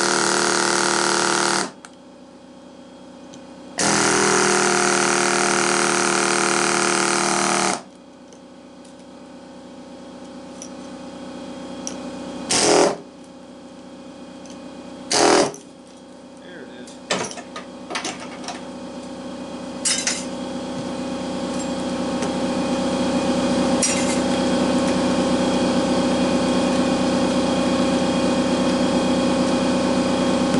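Air chisel (pneumatic hammer) running in two bursts, the first ending a couple of seconds in and the second lasting about four seconds, as it cuts copper windings out of a small fan motor's stator. Then a few sharp metal clanks as the parts are handled, over a steady machine hum that grows louder through the second half.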